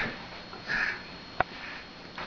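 Cockatoo making short, breathy sniff-like huffs: one right at the start and another just under a second in. A single sharp click comes about a second and a half in.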